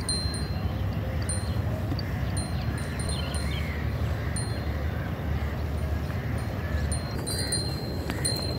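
Small neck bells on a yoked pair of bullocks tinkling in short, irregular rings as the animals stand and shift, over a steady low rumble.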